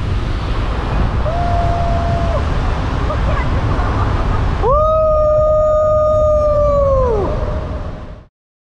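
Car driving through a road tunnel with steady road and engine noise, while a person calls out a held 'hoo': a short one at one steady pitch about a second in, then a louder, longer one past the middle that drops in pitch as it dies away.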